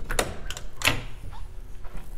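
Two light knocks about two-thirds of a second apart, with a few fainter clicks: hands handling a pickup truck's tailgate.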